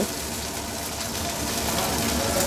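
Chicken and vegetables frying in a hot wok, a steady sizzling hiss as red chilli sauce goes in.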